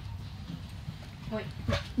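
Steady low rumble of a school bus's engine and road noise inside the cabin, with light rattling.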